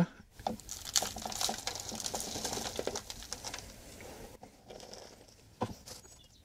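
Potting compost being handled and pressed around a chilli seedling in a small plastic pot: a run of soft crackling and rustling that fades out about four and a half seconds in, with a single tap near the end.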